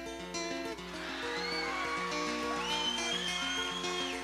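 Instrumental opening of a live song: plucked strings, likely acoustic guitar, play a steady repeating pattern of notes, and from about a second in a high lead line joins, sliding and bending between its notes.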